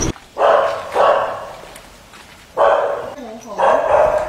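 A dog barking four times: two barks in quick succession, a pause, then two more.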